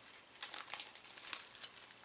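Thin plastic wrapper crinkling in the hands while a frozen sandwich is handled: a quick run of faint crackles starting about half a second in.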